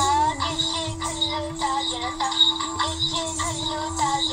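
A recorded dance song: a singer's wavering melody over a steady held drone note that enters about half a second in, with a low repeating beat underneath.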